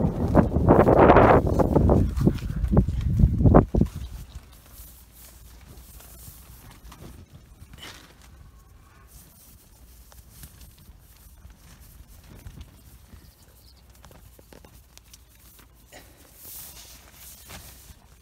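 Rustling of nylon tent fabric and mesh, with knocks from handling, as someone moves into a small ultralight tent. The sound is loud for the first four seconds and ends in a few sharp knocks, then drops to faint scattered rustles.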